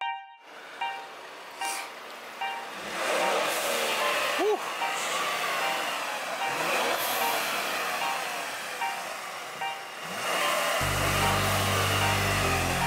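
Outdoor street noise with traffic going by, a steady wash of sound with one brief rising-and-falling tone about four and a half seconds in. A bass-heavy beat starts about a second before the end.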